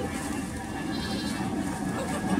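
Goat bleating briefly about a second in while begging for food.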